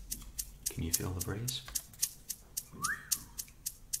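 Drum machine ticking out a steady hi-hat pattern, about four light ticks a second. A short low voice sound comes about a second in, and a brief squeak rises and falls in pitch near the end.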